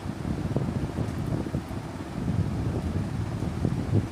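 Low, irregular rumble of air buffeting the microphone, with a few faint soft ticks.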